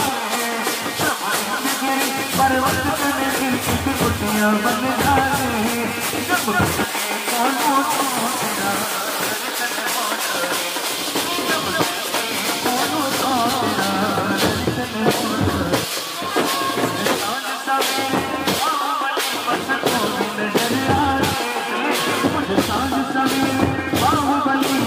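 Procession band music: marching drums keep a steady beat while a man sings a devotional song through a microphone and loudspeaker.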